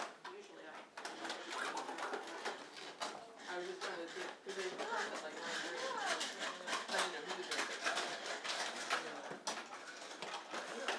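Young children babbling, cooing and chattering over one another, with adults talking under them and scattered light clicks and knocks throughout.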